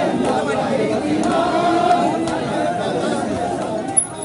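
Voices of a large crowd walking in procession: overlapping chatter with some drawn-out, chanted voices. A sharp click comes at the very end.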